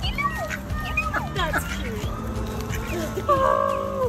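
Background music with short, bending calls from waterfowl over it.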